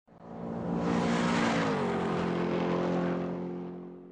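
Intro sound effect of an engine running hard. It swells up, drops in pitch about halfway through, then holds a steady note and fades away near the end.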